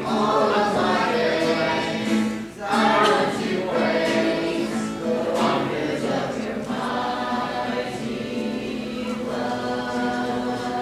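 A mixed youth choir of boys and girls singing a worship song together, with a short break between phrases about two and a half seconds in.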